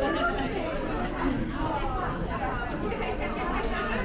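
Overlapping chatter of several passers-by talking, with no single voice standing out.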